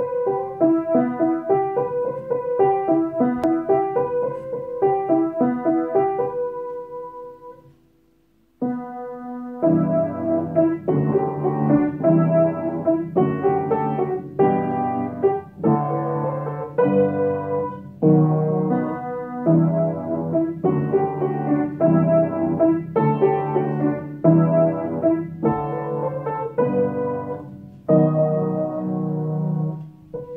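Background piano music: a melody of single notes fades out about eight seconds in, then after a brief gap a fuller piano piece of repeated chords takes over.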